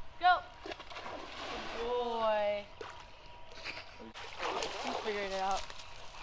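A dog splashing and sloshing in shallow water at a canal bank, in two bouts, with a drawn-out call over each.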